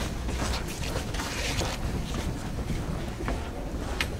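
Classroom noise of people moving about and settling into their seats: rustling, shuffling and scattered small knocks over a steady low rumble.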